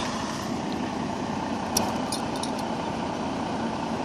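Steady running of an idling truck engine, with a few faint light clicks in the middle.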